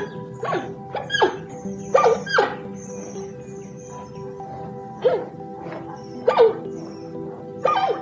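An animal giving a series of short barking calls, each falling in pitch, over background music with held notes. The calls come in two groups, with a pause of about two seconds between them.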